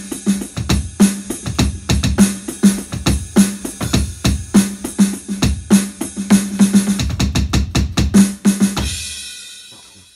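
Electronic drum kit played with sticks: a fast run of bass drum, snare and cymbal hits in a fill that changes subdivisions. The playing stops about nine seconds in and a cymbal rings out, fading.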